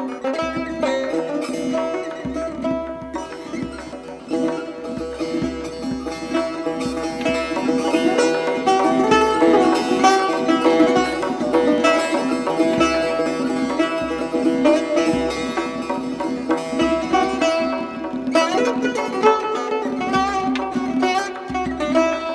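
Persian tar playing a fast chaharmezrab in the mokhalef-e segah mode: rapid plucked-string runs over a constantly repeated drone note.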